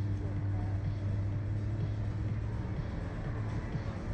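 Steady low mechanical hum and rumble from the slingshot ride's machinery while the capsule sits lowered after the ride.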